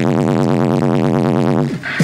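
Loud electronic music with a wobbling synth bass line, played through a car's oversized aftermarket speaker system. The sound dips briefly near the end.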